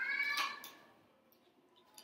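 A young girl's very high-pitched, meow-like vocal call, rising in pitch and ending about half a second in.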